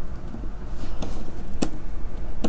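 An Arduino board being pressed into female header sockets on a soldered perfboard: light handling noise with a faint click about a second in and a sharp click about a second and a half in, as the many pins are worked into line. A steady low hum runs underneath.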